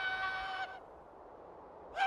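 A cartoon character's long, high, steady yell, held on one note. It cuts off less than a second in, and a second held yell starts just at the end.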